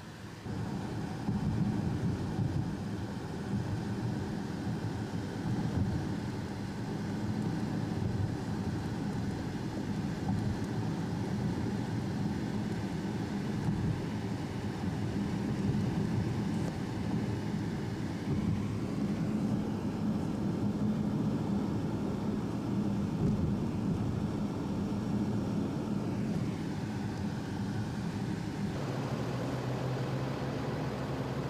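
Car being driven, heard from inside the cabin: a steady engine and road rumble that grows louder about a second in and eases off near the end.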